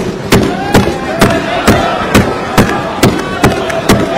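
Assembly members thumping their desks together in a steady beat, a little over two thumps a second: the customary desk-thumping applause of an Indian legislature, greeting a budget announcement.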